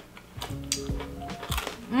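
Crunching of crispy fried chakri as it is bitten and chewed, a few sharp crackles spread through the moment, over quiet background music.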